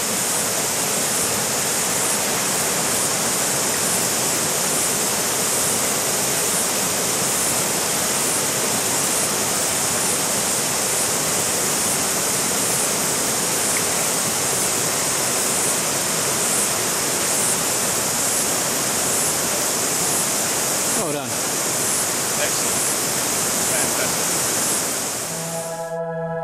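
Fast river water rushing over rapids and stones, a steady, unbroken noise.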